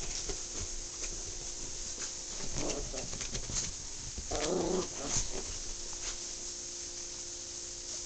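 Small dog making brief low vocal sounds, a short one under three seconds in and a longer one about halfway through, over a faint steady hum.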